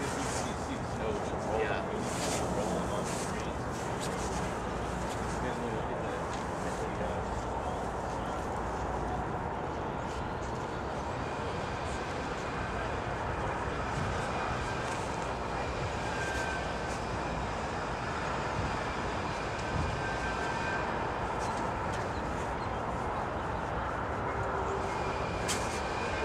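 Two GE CW44AC diesel-electric locomotives, each with a 16-cylinder engine, working a freight train at low speed some way off: a steady low rumble, with faint high tones coming in about halfway through.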